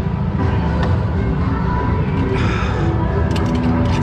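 Go-kart engine running at low speed, a rough steady rumble, with music playing over it in held notes that change pitch every half second or so. A short run of sharp clicks comes near the end.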